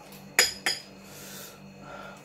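Metal spoon clinking twice against a glass soup bowl, two sharp clicks close together about half a second in.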